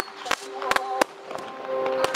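Aerial firework shells bursting with a string of sharp bangs, roughly every half second, over music playing with singing.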